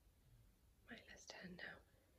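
Near silence in a quiet room, broken about a second in by a single softly whispered word.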